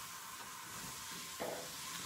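Wax crayon being scribbled back and forth on paper, a steady soft scratchy hiss, with a brief faint knock about one and a half seconds in.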